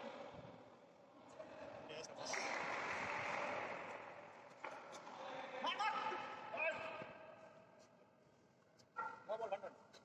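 Indistinct men's voices calling out inside an empty steel cargo hold, with a few sharp knocks between the calls.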